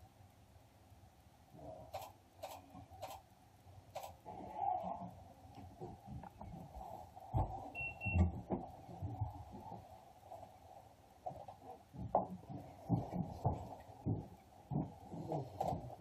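Faint background noise in a small room, with scattered soft knocks and clicks and a brief high tone about halfway through.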